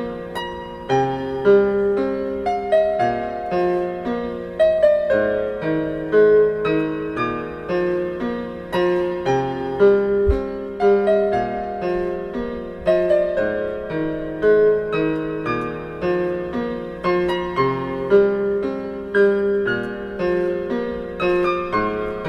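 Background piano music: a calm piece of repeated struck notes at an even pace.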